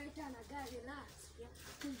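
Speech: a person talking quietly, with a low steady hum underneath.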